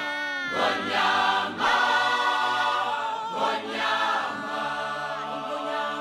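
Background music of a choir singing, several voices holding long, wavering notes.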